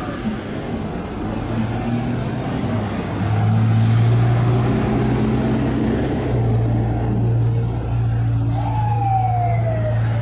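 Police siren: a wail sweep dies away right at the start, and near the end a single siren tone glides down in pitch. Under it, from about a second in, runs a steady low drone.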